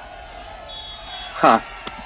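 A man's short laugh, a single loud burst falling in pitch about a second and a half in. Shortly before it, a brief thin high beep.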